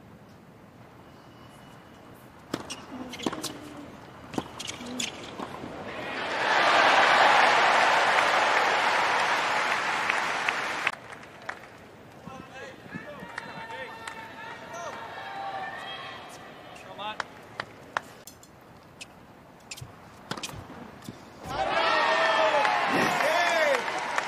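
A tennis rally with sharp pops of racket strings hitting the ball, then a loud stadium crowd roar for several seconds mid-rally. After a quieter stretch of scattered crowd voices, loud cheering and shouting from the crowd breaks out near the end once the point is over.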